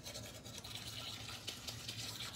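A manual toothbrush scrubbing teeth: faint, quick scratching of the bristles.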